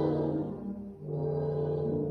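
Chamber orchestra playing slow, held chords in a mid-to-low register. A chord swells at the start, then a new sustained chord comes in about a second in.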